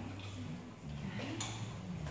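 A steady low hum with a few faint clicks; a woman says "okay" about a second in.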